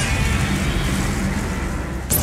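Steady, low rumbling sound effect under music.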